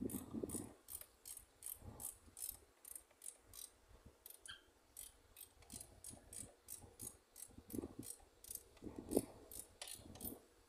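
Faint, steady ratchet-like clicking, about three clicks a second, from a hand tool worked on the booster pump's pipe fittings, with a few dull knocks of metal handling.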